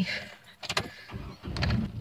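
A few sharp clicks, then a car engine starting about a second in and settling into a low, steady idle.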